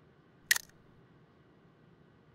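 Camera shutter firing once: a sharp double click about half a second in, as a camera on a stand photographs a 35mm film negative on a light box.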